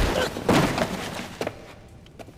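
Anime fight sound effects: a heavy impact at the start, a second crashing hit about half a second in with a shattering, crackling noise, then another knock and a fade.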